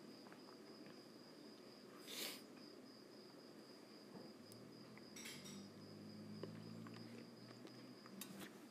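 Near silence: room tone with a faint steady high-pitched whine, two brief soft rustles about two and five seconds in, and a faint low hum from about halfway to near the end.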